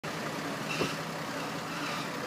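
Diesel engine of an Iveco Eurocargo fire engine idling steadily close by, with one short louder noise just under a second in.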